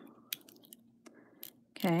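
A few faint, sharp clicks and ticks of a springy guitar string being wound by hand around a wire ring on a ring mandrel, then a woman says "Okay" near the end.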